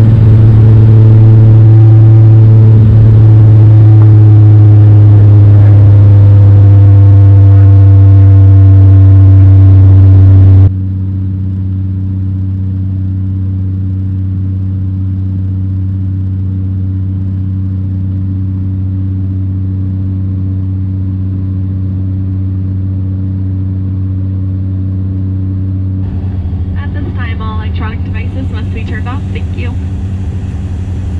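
Saab 2000 turboprop engine and six-bladed propeller heard from a cabin seat beside it in flight: a loud, steady low drone with a few higher tones over it. About ten seconds in it drops suddenly to a quieter, still steady drone.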